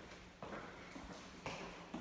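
Soft footsteps on a polished tile floor: a few light taps, roughly half a second to a second apart, over a quiet hallway hush.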